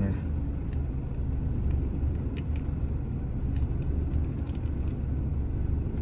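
Steady low rumble of a large truck's idling diesel engine heard inside the cab. Faint scattered clicks and crinkles come from a plastic salad tub and a dressing packet being squeezed over it.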